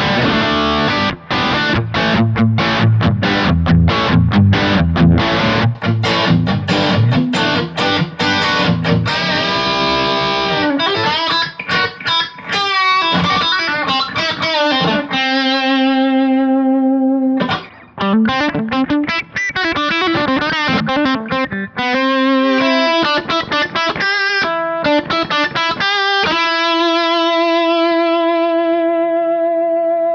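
Electric guitar played through a Kemper profile of a 1965 Fender Bassman set for light overdrive, playing rock lead lines. For about the first ten seconds it is over a backing track with bass and drums. After that the guitar plays alone, with bent and sustained notes, and ends on one long held note.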